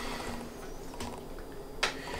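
Quiet room tone in a small room with a faint steady hum, a light tick about a second in, and one sharp click near the end.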